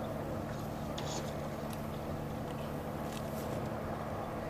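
Outdoor arena background: a steady low hum with faint distant voices, and a few light clicks about a second in and again near the end.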